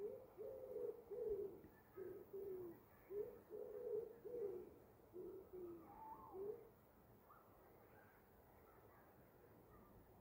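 A woodpigeon cooing faintly, a run of soft, low coos in short phrases that stops about two-thirds of the way through. A smaller bird chirps faintly near the end of the cooing.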